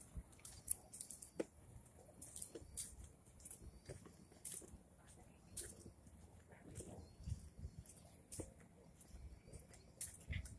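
Faint irregular ticks and clicks over a low rumble, from walking and pushing a baby stroller along a concrete walkway.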